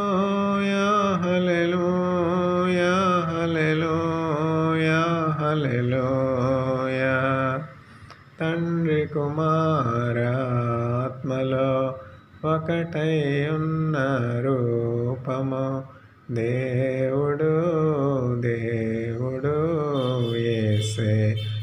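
A man singing a slow devotional song in a chant-like style. He holds long, wavering notes and stops briefly for breath about eight, twelve and sixteen seconds in.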